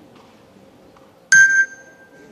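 A single bell-like ding about a second and a half in, sharp at the start. Its high ring fades within half a second while a lower tone holds a little longer, over quiet hall tone.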